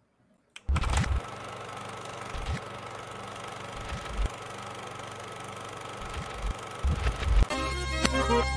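Podcast intro sting: after a moment of silence, a sudden glitchy burst of static-like hiss with a few low thumps, giving way near the end to electronic music with a heavy bass.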